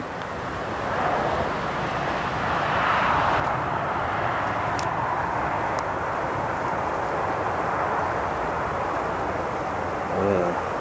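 Steady rushing noise of riding a bicycle, with wind over the microphone and tyres on the path, swelling a little around three seconds in. Two faint clicks come near the middle.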